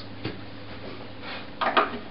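String winder turning a classical guitar's tuning pegs to slacken the strings: a faint click a quarter second in, then a brief clatter of small clicks near the end.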